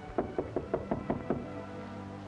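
A rapid run of about seven knocks on a door, over background film music.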